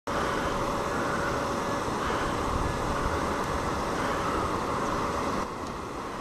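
Shallow mountain river rushing over boulders and stones: a steady, even whitewater rush. A little over five seconds in it drops suddenly to a somewhat quieter level.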